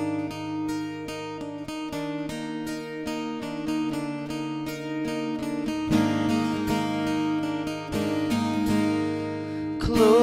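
Acoustic guitar picking and strumming ringing chords, with fuller, louder strums from about six seconds in.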